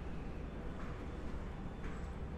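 Steady low city hum of distant traffic, with a couple of soft footsteps on paving stones.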